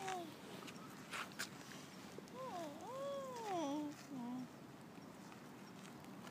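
A young child's wordless sing-song voice: a long call that slides up and then down, followed by two short low notes, with a similar sliding call trailing off at the start. Two sharp clicks come about a second in.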